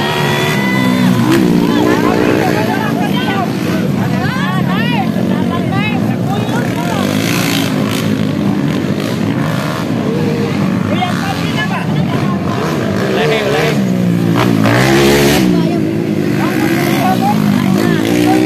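Racing dirt-bike engines revving up and down as motorcycles ride round a motocross track, with voices over them.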